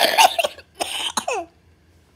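A woman coughing hard, two harsh bursts about half a second apart, during a morning coughing fit from cystic fibrosis.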